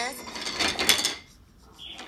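About a second of clattering, crackling noise as a call is put through on air. Near the end comes the narrow hiss of a telephone line as the caller comes on.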